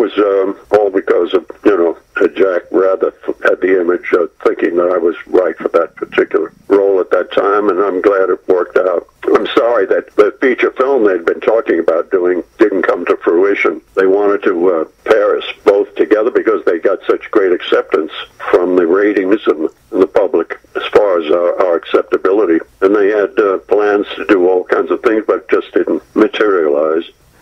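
A person talking steadily over a telephone line, the voice thin and cut off above the middle range.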